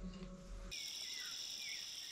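Crickets chirping in a steady chorus, starting abruptly about two-thirds of a second in, with a few faint short gliding chirps beneath.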